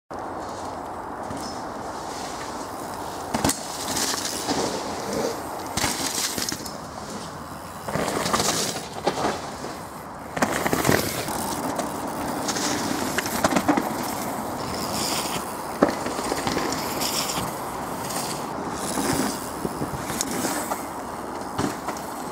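Mountain bikes riding down a dirt woodland trail past the microphone: repeated bursts of tyre noise on loose dirt and roots, with sharp knocks, over a steady background hiss.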